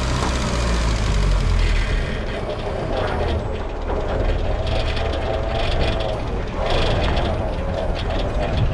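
1955 Land Rover Series I 107 pickup's engine running steadily as the vehicle drives slowly on its first test drive after restoration, a continuous low rumble.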